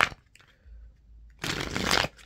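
Tarot cards being shuffled by hand: a short sharp snap at the start, then a dense rush of riffling cards for about half a second near the end.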